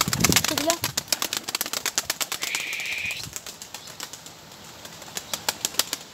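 Domestic pigeon's wings flapping as it takes off, a fast run of wing beats that thins out and fades over the next few seconds; this pigeon flies poorly and makes only a short flight.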